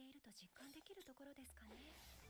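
Very faint speech, barely above near silence: a soft voice saying a line of dialogue.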